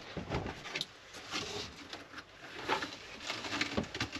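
Packaging and gear being shifted around by hand: scattered light knocks and rustling of cardboard and foam.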